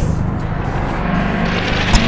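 Rumbling whoosh sound effect over a low drone, swelling in its second half, with a sharp click near the end.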